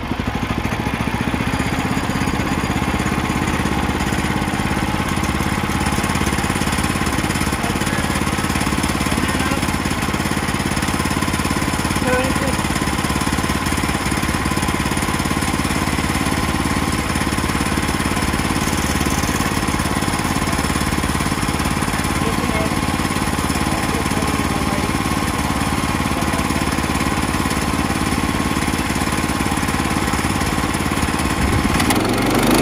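Portable bandsaw sawmill's Kohler gasoline engine throttling up at the start and then running steadily at full speed as the band blade is pushed through a log.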